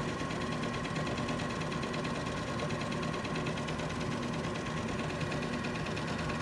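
Retsch PM200 planetary ball mill running at 550 rpm with no grinding jars fitted: a steady machine whir with a constant high whine and a fast, even pulsing.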